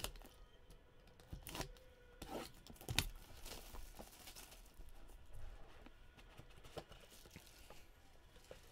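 Plastic shrink wrap on a trading-card box being slit with a small cutter and torn off: faint tearing and crinkling of the film, with a few sharp snaps in the first three seconds.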